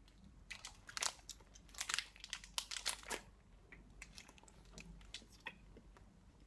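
A run of faint, irregular crackles and clicks, densest in the first half and thinning out after about three seconds.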